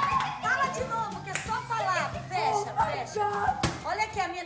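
Excited women's voices exclaiming and cheering without clear words, over steady background music, with two sharp clicks, one about a second and a half in and one near the end.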